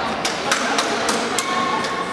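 Sharp clicks of badminton rackets striking shuttlecocks, several in quick succession, over the chatter of voices in a sports hall. A short squeak comes about a second and a half in.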